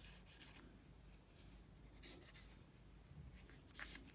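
Faint scratching of a cotton bud rubbed along the edge of an iPod Nano's aluminium case, a few short strokes with near silence between them.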